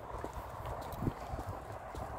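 Footsteps on a tarmac path, a few soft steps over a faint low rumble.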